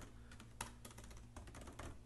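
Faint typing on a computer keyboard: light key clicks at irregular spacing.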